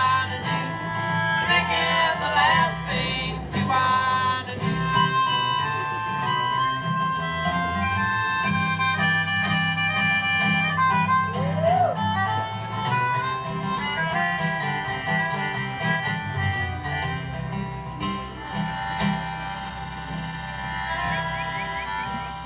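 Live acoustic band playing an instrumental passage of a folk song: strummed acoustic guitar over an upright bass line, with long held melody notes on top.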